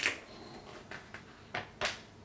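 A few sharp clicks and taps of hard plastic toy parts being handled. The loudest comes right at the start and another just before the end, with lighter ticks between.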